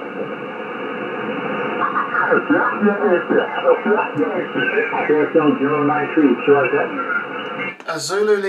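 Single-sideband voice received on the 20-metre amateur band through an Icom IC-756PRO II transceiver's speaker: thin, telephone-like radio speech over steady band hiss. The first second or so is mostly hiss before the voice comes through.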